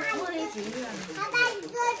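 People talking, among them a small child's high voice. No other sound stands out.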